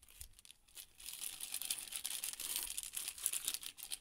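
Plastic spice sachet crinkling as it is squeezed and shaken out over the fish, a dense crackle that grows louder about a second in.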